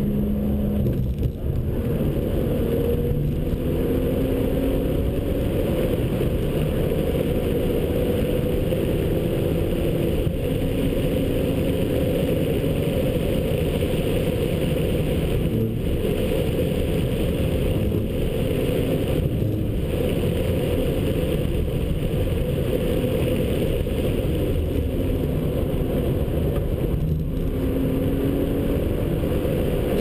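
BMW 1 Series M Coupe's twin-turbo 3.0-litre inline-six pulling hard under load, held mostly in third gear. Heard from inside the cabin, its pitch rises and falls gently through the corners, with a few brief dips in level, over steady tyre and wind noise.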